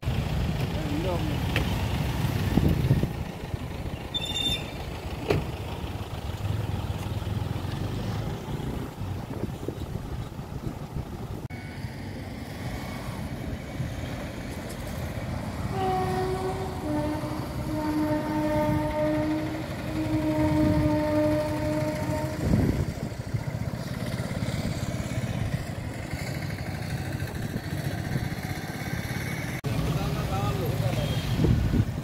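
Roadside traffic noise from passing vehicles. About halfway through, a horn sounds in two long blasts.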